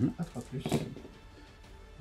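A handful of dice thrown onto a wargaming mat: a short clatter of several small knocks as they land and tumble, the loudest just under a second in, then settling.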